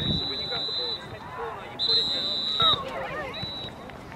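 A referee's whistle blown three times: a long steady blast already sounding as it begins, a second long blast about two seconds in, and a short one near the end, over distant spectators' voices.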